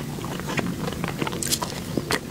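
Close-miked chewing of a soft, cream-filled purple dough bun: wet mouth clicks and smacks throughout, with a sharper, louder smack about one and a half seconds in as the bun meets her lips for another bite.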